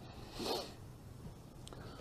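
A single short rustle about half a second in, over the quiet tone of a room.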